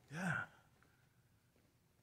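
A single short spoken "yeah" in a man's voice, then quiet room tone.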